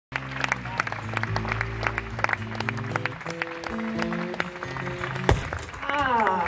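Ovation acoustic-electric guitar being tuned: single strings plucked and left ringing at several pitches, with scattered light clicks. About five seconds in comes one sharp, loud snap, which fits a string breaking under tuning.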